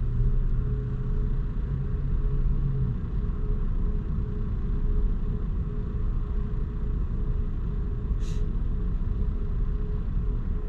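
A stationary car idling, heard from inside the cabin as a steady low rumble with a faint steady hum. A deeper hum drops out about three seconds in, and a short hiss comes about eight seconds in.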